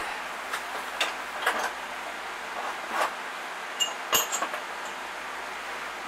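A few light knocks and clicks, some with a brief metallic ring, as tools and small metal parts are handled and set down, over a steady hiss of shop background noise.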